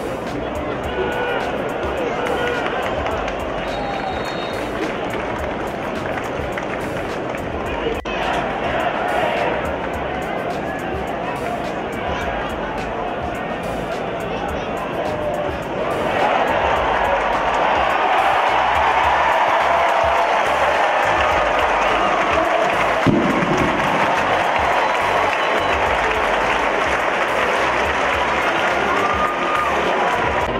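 Football stadium crowd noise, a steady hubbub that swells into louder cheering and applause about halfway through as the home team scores a touchdown.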